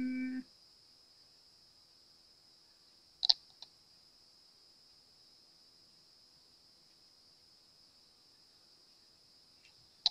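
Quiet room with a faint steady high hiss, broken by one short light click about three seconds in and a fainter click just after.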